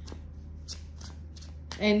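A deck of tarot cards being shuffled by hand: a run of soft, irregular, papery flicks.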